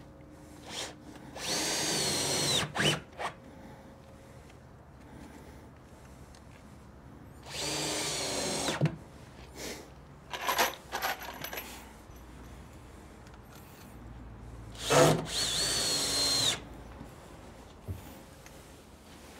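Cordless drill driving screws into two-inch wooden planks: three runs of about a second each, a few seconds apart, the whine dropping in pitch at the end of the first two. A few short knocks come between the runs.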